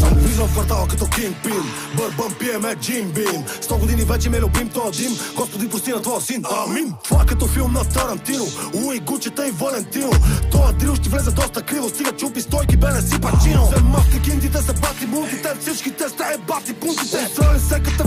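Bulgarian drill track playing: fast rapping in Bulgarian over a drill beat, with deep bass notes in stretches of about a second that come back every few seconds.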